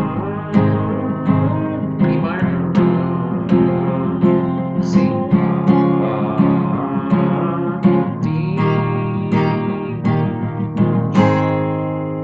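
Takamine acoustic guitar, capoed at the first fret, strummed in a steady rhythm through the song's outro progression of G, Em, C and D. A last chord is struck near the end and left ringing.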